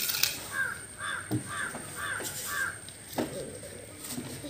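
A bird calling five times in quick succession, about two calls a second, beginning about half a second in. A few short knocks and rustles sound alongside.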